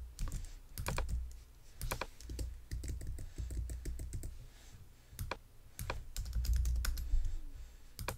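Typing on a computer keyboard: irregular runs of key clicks with short pauses between them as a line of code is entered and edited.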